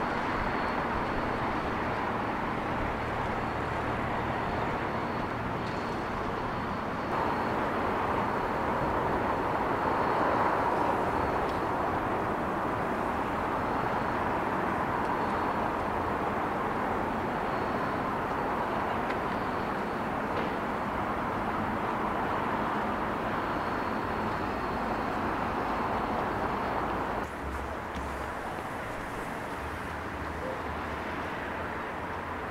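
Steady outdoor town ambience: a continuous wash of distant road traffic. It changes abruptly about a quarter of the way in and again near the end, at edits between recordings.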